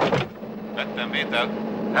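A steady low hum, as from a motor, with short snatches of voice over it.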